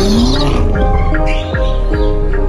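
BMW X6 M's twin-turbo V8 revving up in rising pitch as the car pulls away, with tyres squealing on concrete, under loud background music.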